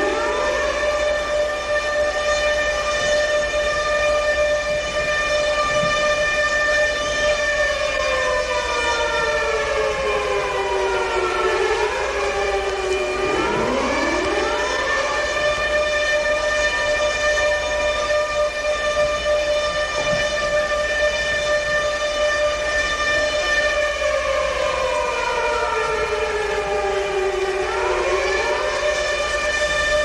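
Siren-like electronic wail in the opening of a live breakbeat DJ set: a chord of held tones slides slowly down, then sweeps quickly back up, twice, with no beat under it.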